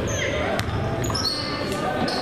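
Basketball dribbled on a hardwood gym floor, a few separate bounces echoing in the large hall.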